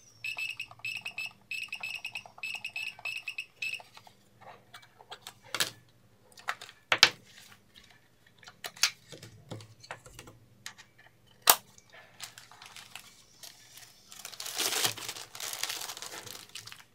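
An infrared remote-code detector beeps rapidly, several short beeps a second, as the buttons of an Akai CX-507 TV remote are pressed, showing each key sends a signal. The beeping stops about four seconds in, giving way to scattered clicks and knocks of the plastic remote being handled. Near the end plastic film crinkles as the remote is wrapped.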